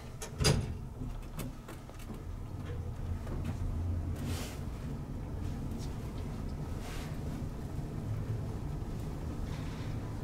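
A sharp clunk about half a second in, then a steady low hum from an original 1950s Otis elevator's machinery, with soft sliding swells around four and seven seconds in.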